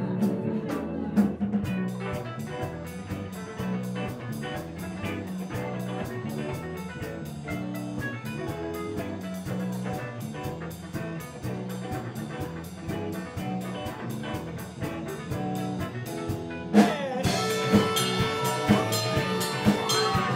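A live rock band playing an instrumental passage: electric organ lead over drum kit, bass and electric guitar. About seventeen seconds in, the whole band comes in louder and fuller, with cymbals crashing.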